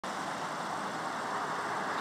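Steady hiss of distant road traffic, even and unbroken, with no distinct engine note or other events.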